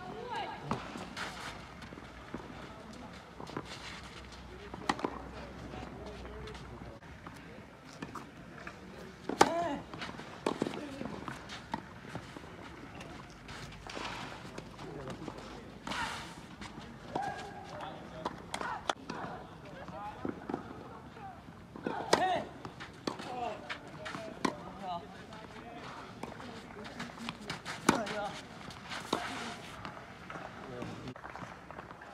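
Tennis ball struck by rackets during a rally on a clay court: sharp pops a second or more apart, the loudest about a third of the way in and again near the end. Voices and short calls are heard around the court, some right after the hits.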